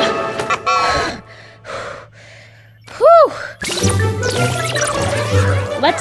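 Cartoon soundtrack: a few short pitched sounds, a quieter spell, then a loud single tone that rises and falls about three seconds in. Music with a steady bass line follows.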